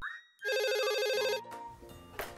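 Office desk telephone giving one electronic ring of about a second.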